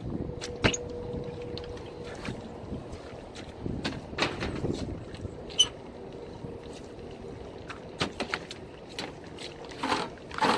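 Scattered metal clicks and knocks as the hinged filter access panel of a rooftop HVAC unit is opened and handled, with a filter being drawn out near the end, over a faint steady hum.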